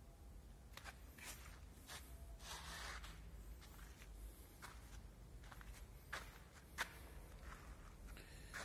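Faint footsteps: a few soft scuffs and clicks at irregular intervals, over a low steady rumble.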